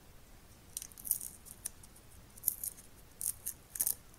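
Clear plastic carrier tape of SMD components being handled, with its cover tape peeled back. It makes short, sharp, high-pitched crackles and clicks about a second in, again near two and a half seconds, and in a cluster near the end.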